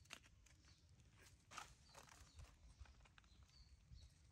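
Faint patter and rustle of a baby monkey's hands and feet scampering over dry leaves and dirt: a few soft, scattered ticks, the clearest about a second and a half in.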